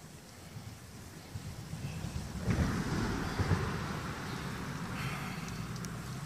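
Wind buffeting the microphone: a rushing noise with an uneven low rumble that comes in about two and a half seconds in.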